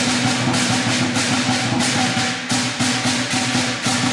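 Lion dance percussion ensemble playing: a Chinese drum beaten with clashing cymbals about three to four times a second over a ringing gong.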